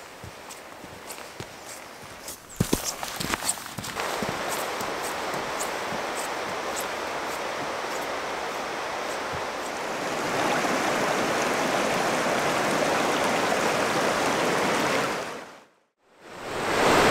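Footsteps through frosty grass and dead bracken, the steps louder about three seconds in. Then the steady rush of a river running over rocks, louder from about ten seconds in, fading out just before the end.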